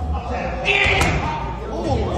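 Boxing gloves smacking into focus mitts during pad work, with one sharp smack about halfway through, preceded by a short hissing burst, over voices in a large, echoing gym.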